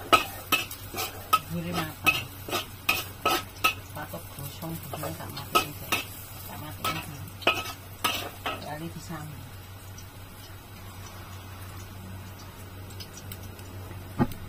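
Metal spatula scraping and clanking against a carbon-steel wok during stir-frying, with a sizzle under it. The clanks come about twice a second for roughly the first eight seconds, then stop, leaving only a low steady hiss.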